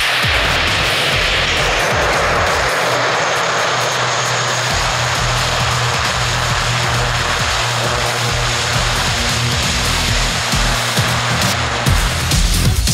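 Twin turboprop engines and propellers of a CASA C-295M military transport running at high power: a loud, steady rushing drone. A music track with a beat plays underneath.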